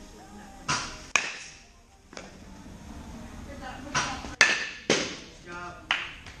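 A series of sharp cracks from a baseball bat hitting machine-pitched balls in an indoor batting cage, with balls striking the netting and mats, each crack ringing briefly in the large hall. The loudest comes about four and a half seconds in. Faint voices are in the background.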